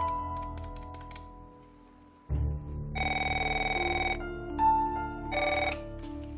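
Telephone ringing with an electronic trill, two rings: a ring of about a second, then a shorter one about a second and a half later. Soft background music with plucked notes and a low drone plays underneath.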